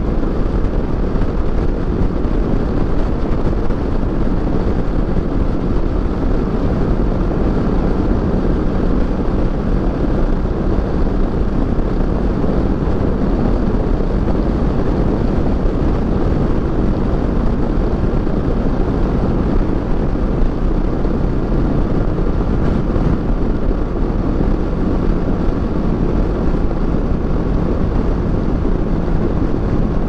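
Kawasaki Versys 650 parallel-twin engine running steadily at highway cruising speed, with a constant rush of wind over the camera microphone.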